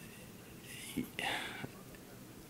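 Faint, indistinct speech picked up from well off the microphone, with a small click about a second in.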